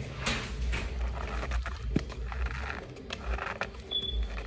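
Cardboard box of Maizena cornstarch being handled while fingers dig into and press the powder: a run of soft crackling and rustling with one sharp tap about halfway through, and hardly any of the squeak that pressed cornstarch can make.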